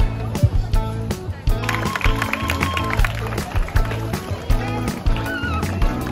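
Upbeat music with a steady beat, a bass line and a melody.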